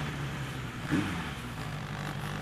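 Suzuki Bandit motorcycle's inline-four engine running steadily at low road speed, with wind and road noise on a helmet-mounted microphone and a short swell about a second in.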